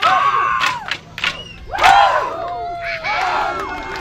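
Men's group yells during a Chuukese stick dance. There are several loud shouts that rise and fall in pitch: one at the start, one about two seconds in with a held note after it, and another about three seconds in. A few sharp clacks of the dancers' sticks fall between them.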